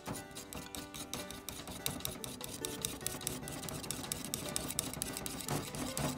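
A wire whisk beating two egg yolks in a ceramic bowl, its tines clicking rapidly and steadily against the bowl. Background music plays underneath.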